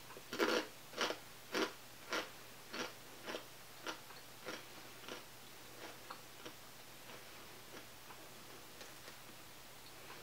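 Chewing a crunchy sea salt kale chip: a regular crunch a little under twice a second, loud at first and growing fainter as the chip is chewed down.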